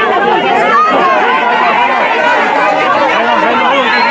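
A crowd of protesters shouting and talking over one another, many voices at once in a loud, continuous clamour with no single voice standing out.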